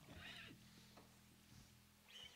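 Near silence: quiet room tone with a faint steady low hum and a brief faint rustle.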